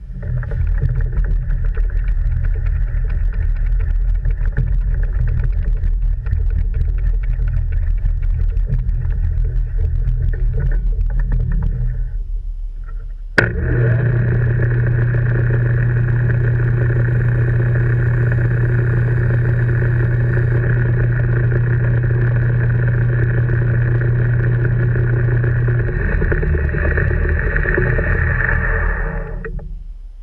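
Smithy combination lathe-mill running, its chuck spinning an aluminium workpiece: the motor and gearing start up with a steady mechanical whir, ease off briefly about twelve seconds in, then after a sharp click run again louder with a strong low hum, and wind down near the end.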